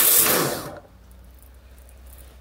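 A short burst from a pressure washer lance: a loud rush of spray that starts suddenly and dies away within the first second, leaving a low steady hum.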